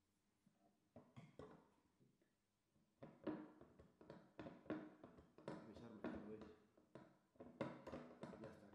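Faint clicking and rattling from a professional BOJ can opener's crank-and-gear mechanism as the handle is turned with a screwdriver held in the cutting head. It starts about three seconds in, after a few soft taps.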